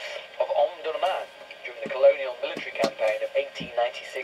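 Talk from a radio playing in the background, thin and without bass, running through the whole stretch.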